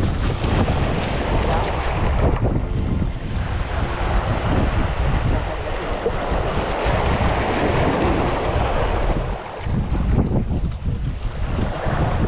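Wind buffeting the microphone, over small waves washing against shoreline rocks.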